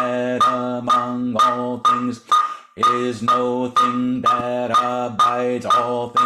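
A man chanting a Buddhist sutra recitation on one steady pitch, a syllable to each stroke of a percussion beat struck about twice a second. There is a brief pause for breath a little over two seconds in.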